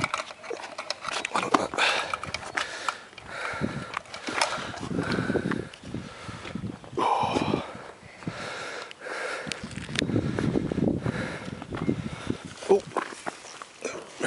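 Indistinct, low talk between people, with scattered clicks and rustles of gear being handled.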